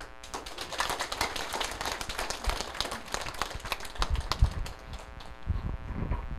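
An audience clapping, a moderate, dense patter of many hands that starts just after the beginning.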